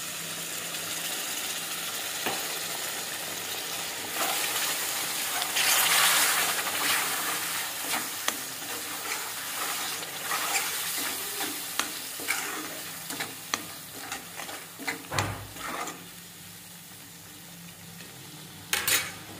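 Water poured into a wok of hot fried masala sizzles, loudest a few seconds in. A steel spoon stirring and scraping the pan makes sharp clicks, and the sizzling dies down toward the end.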